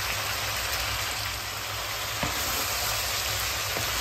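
Chicken, bamboo shoots and potatoes sizzling steadily in a wok, with a couple of faint clicks about two seconds in and near the end.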